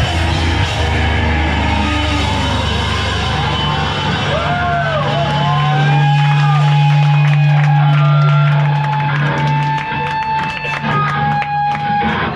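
Hardcore band playing live through amplifiers in a small basement room: the song winds down to a loud held low bass note, with wavering, whistling guitar tones ringing over it, and the sound falls away near the end.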